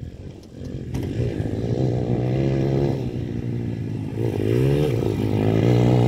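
Pit bike's small engine running as the bike rides toward the listener, growing louder, with a brief rise in revs about four and a half seconds in.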